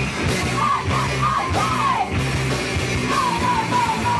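Punk band playing live: a woman's vocal phrases over electric bass, guitar and drums, with a steady drum beat.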